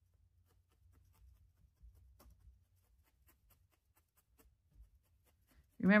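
Multi-needle felting tool stabbing wool roving into a felting mat: faint, quick pokes, about four or five a second.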